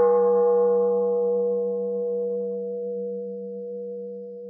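A struck bowl bell ringing on just after its strike and slowly fading, with a low wavering hum beneath the clear ringing tones.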